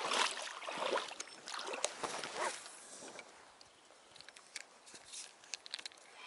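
Water sloshing and splashing around a small boat, strongest in the first three seconds. Then a spinning reel being handled and wound, with a few light clicks near the end.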